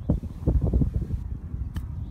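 Wind buffeting the microphone with an uneven low rumble, and a single sharp click near the end as an iron strikes the golf ball on a chip shot out of the rough.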